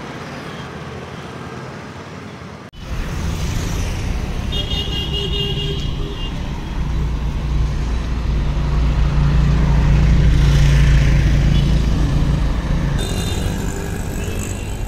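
Street traffic noise with a low rumble that grows louder toward the middle. A vehicle horn sounds briefly about five seconds in.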